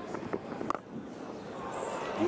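Cricket bat striking the ball once, a sharp crack about three quarters of a second in, a big hit off a leg-spinner that goes for six.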